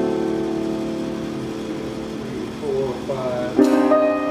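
Live jazz quartet with piano and double bass: a held chord rings out and slowly fades, a short sliding melodic phrase follows, and a new piano chord is struck near the end.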